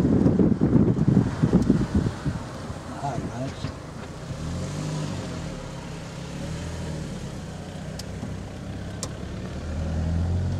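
Car driving along a lane, heard from inside the cabin: a steady engine hum with road noise. Wind buffets the microphone for the first couple of seconds. The engine note dips and rises about five seconds in and grows louder near the end.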